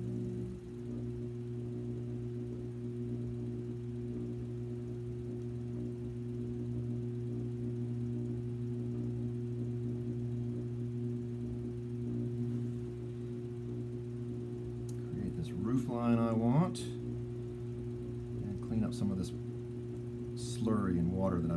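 Electric potter's wheel motor humming steadily while a clay pot is shaped on it. A person's voice is heard briefly about three-quarters of the way through.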